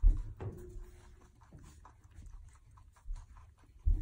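A guinea pig and a rabbit chewing cucumber: faint scattered crunching clicks, with a sharp thump right at the start and a small knock near the end.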